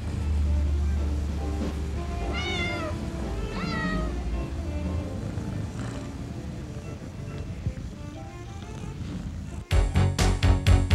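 A cat meows twice, about two and a half and four seconds in, over a low steady drone. Near the end, loud upbeat music starts abruptly.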